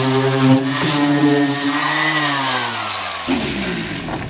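Electric angle grinder with an abrasive disc running against a cured fiberglass patch, roughing up the surface so the filler will bond. About halfway through it is switched off and spins down, its pitch falling until it stops.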